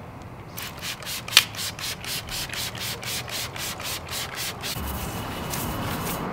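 Bristle wheel brush scrubbing a wet alloy wheel in quick back-and-forth strokes, about four a second. The strokes start about half a second in, and one early stroke is louder than the rest.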